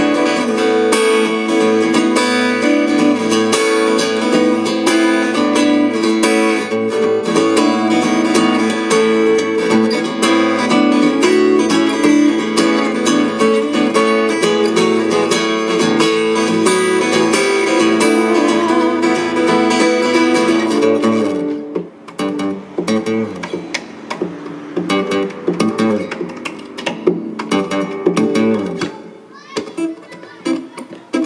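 Live acoustic guitar and soprano saxophone playing together as a duo. The full, dense playing thins out to a quieter, sparser passage about two-thirds of the way through.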